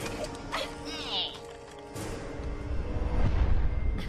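Dramatic film score with action sound effects: a few sharp hits, a short warbling glide about a second in, and a low rumble that swells over the last second and a half.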